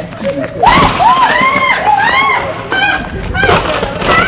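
Several women's high-pitched shrieks and squeals, rising and falling, over a steady hiss of noise.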